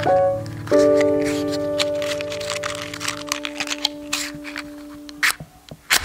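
Background piano music: a chord struck about a second in rings on and slowly fades, with a rapid, irregular run of clicks over it until near the end.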